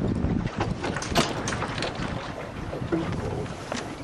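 Wind rushing over the microphone aboard a small sailboat turning through a tack, with water moving along the hull. A few sharp ticks sound over it.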